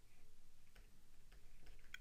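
Faint, irregular light ticks of a stylus tapping and stroking on a tablet screen while handwriting, over low room hiss.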